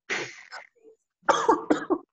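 Speech: a narrator's voice from an instructional video, in two short phrases with a pause between.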